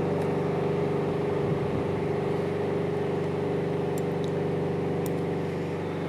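A steady machine hum: a low drone made of several held tones that stays level throughout.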